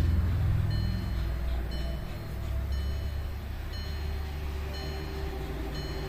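A steady low rumble of workshop background noise, easing slightly in the first two seconds. Over it, a faint high-pitched chime repeats about once a second.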